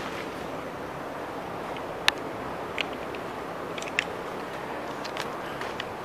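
A pickup truck's engine running steadily just outside, heard as an even low rumble, with a few light, sharp clicks over it.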